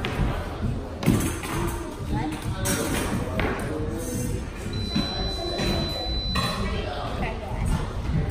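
Indistinct voices and chatter in a large hall, with scattered thumps and one high, steady beep lasting under two seconds about five seconds in.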